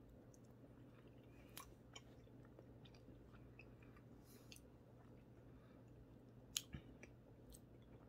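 Near silence with faint sounds of a man chewing a mouthful of very soft, creamy cheese: a few small, scattered wet mouth clicks over a low steady hum.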